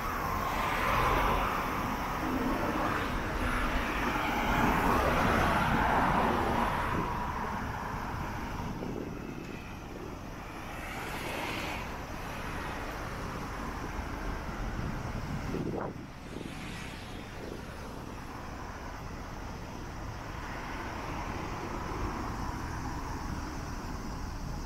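Road traffic: a vehicle passes, loudest about four to six seconds in, then steady, quieter traffic noise.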